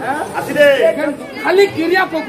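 Speech: a loud voice delivering stage dialogue, with crowd chatter behind it.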